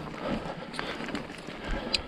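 Mountain bike rolling down a dirt singletrack: steady tyre noise on the trail with small irregular knocks and rattles from the bike over roots and stones, and one sharper click near the end.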